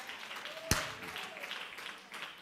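Scattered applause from a congregation, with faint voices responding underneath and one sharp, louder clap or knock less than a second in.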